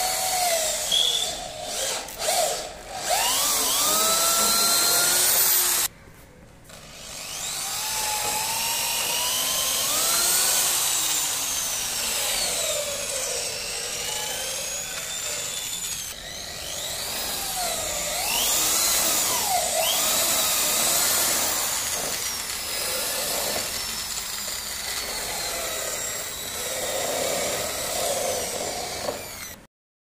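Electric hand drill boring screw holes through a wooden frame strip. Its motor whine rises and falls in pitch as the speed and load change, with a short drop about six seconds in.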